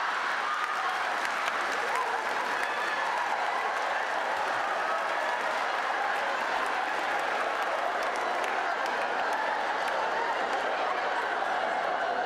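Theatre audience applauding steadily and at length, with some voices mixed into the clapping.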